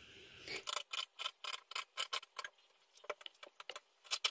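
Scissors cutting through cloth: a faint run of short snipping clicks, about four or five a second, with a brief pause a little past halfway before the snips resume.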